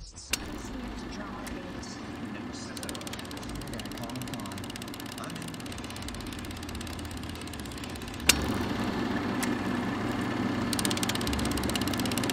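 Film projector running: a steady motor hum with a rapid ticking clatter. It gets louder with a click about eight seconds in.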